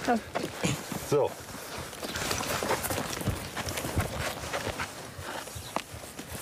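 A donkey's hooves and a man's feet shuffle on dry, stony ground while the donkey's hind leg is being handled, with many small scuffs and one sharp click near the end.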